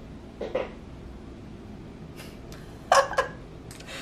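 A chair squeaking as the person sitting in it shifts. There is a short squeak about half a second in and a louder one about three seconds in.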